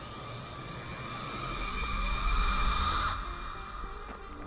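A cinematic sound-design riser: a sustained drone with tones sweeping upward in pitch and a deep rumble that swells, building to a peak and then cutting off suddenly about three seconds in.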